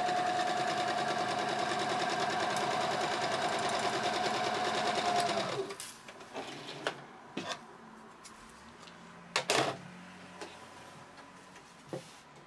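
Electric domestic sewing machine stitching at a steady speed, its motor holding one steady whine over a fast, even needle rhythm, stopping abruptly about halfway through. After it stops come quieter rustles of fabric being handled and a few sharp clicks and knocks.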